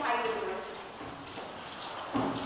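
Footsteps of several people walking on a hard floor.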